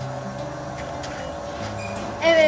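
A steady mechanical hum with a constant tone and a faint even hiss beneath it, with a few faint clicks.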